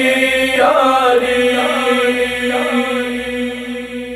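Shia noha chanted by male voices: a long, drawn-out sung line that rises and falls over a steady held drone, easing off a little near the end.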